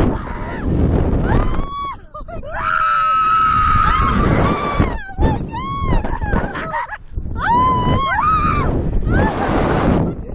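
Two riders screaming and laughing as a SlingShot reverse-bungee ride flings them: a long, high, held scream a few seconds in, then shorter shrieks that rise and fall, mixed with laughter.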